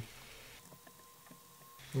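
Quiet room tone with a few faint ticks from a stylus writing on a tablet screen, and a faint thin hum through the middle second.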